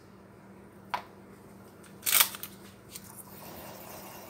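A small click, then a brief louder clatter a little after two seconds as a whisk knocks against a stainless steel saucepan, followed by soft stirring of the melted butter, over a low steady hum.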